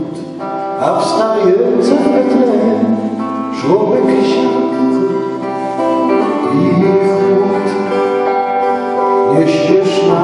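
Live folk carol played by a small band: strummed acoustic guitar with a bowed violin melody and keyboard.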